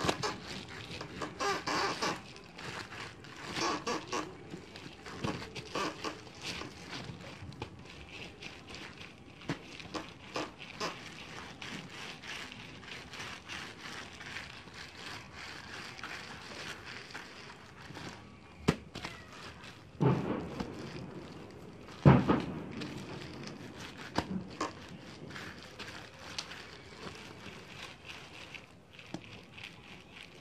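Clear plastic sheeting crinkling and rustling under hands rolling and handling tamal dough on a wooden table, with scattered clicks and a few louder knocks, the loudest about two-thirds of the way through.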